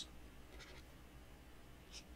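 Near silence: room tone with faint scratching of a pen or stylus marking up text.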